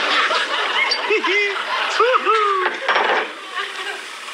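Studio audience laughing, many voices at once with individual laughs rising and falling; the laughter dies down about three seconds in.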